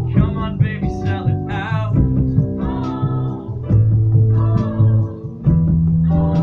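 Live musical-theatre song: guitar and bass accompaniment with a sung vocal line, the voice wavering with vibrato in the first two seconds.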